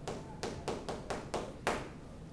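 Chalk writing on a chalkboard: about seven short, sharp taps and scrapes in quick succession as letters and bond lines are drawn.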